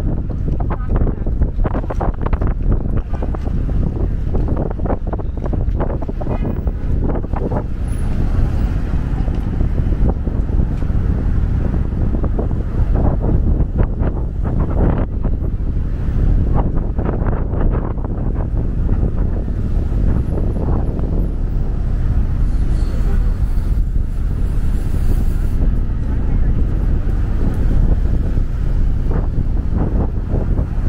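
Busy downtown street ambience: wind buffeting the microphone as a steady low rumble, with traffic and passing voices in the background.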